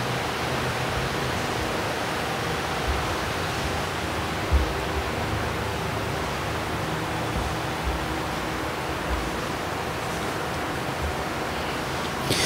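A steady, even rushing noise spread across the whole range, with a few faint low thumps.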